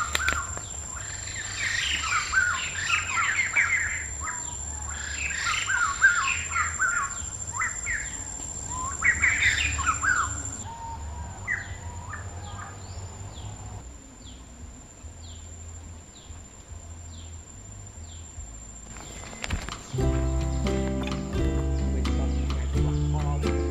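Birds chirping and calling in quick clusters for about the first ten seconds, then fainter single down-slurred chirps about once a second. Plucked guitar music comes in near the end.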